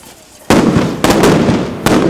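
Pyrotechnic blasts bursting in showers of sparks on the pavement: a sharp, very loud bang about half a second in, then a continuous loud crackle with two more bangs.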